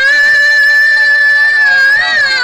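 A woman singing a Himachali folk song (nati), holding one long, steady high note.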